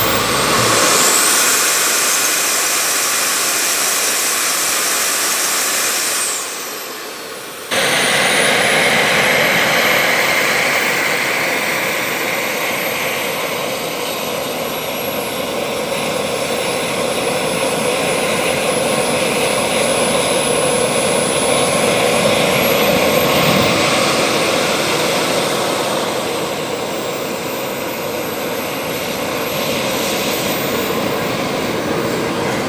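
Model jet turbine engines of a Skymaster F-4 Phantom RC jet running at high power. They make a steady rush with a high whine that climbs in pitch in the first second, then slowly sinks and rises again. The sound fades briefly about six seconds in and comes back suddenly near eight seconds.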